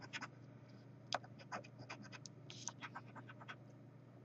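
Scratch-off lottery ticket being scratched, the coating scraped off the card in short, faint, irregular strokes, a few a second.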